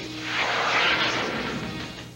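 Closing music of a TV commercial with a rushing sound effect that swells about half a second in and then slowly fades, over held low tones.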